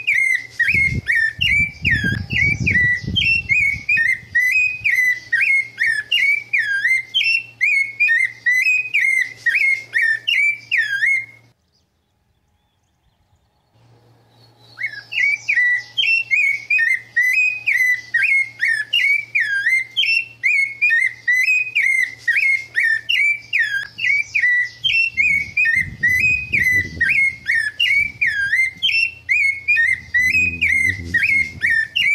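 Rufous-bellied thrush (sabiá-laranjeira) singing: a fast, unbroken run of gliding whistled notes. It breaks off for about three seconds of near silence a third of the way in, then resumes. A low rumble sits under the song near the start and again near the end.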